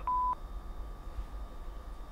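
A mobile phone's single short beep, one steady tone of about a third of a second right at the start: the call-ended tone as the call is hung up. After it, only a low steady hum.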